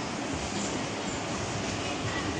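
Steady background noise: an even hiss with a low rumble and no distinct events.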